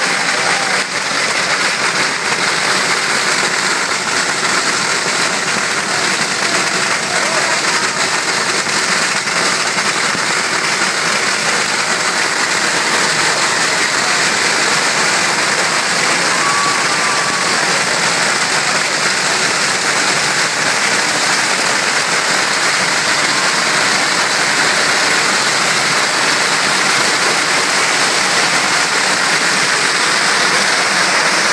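Long strings of firecrackers going off in an unbroken, dense crackle.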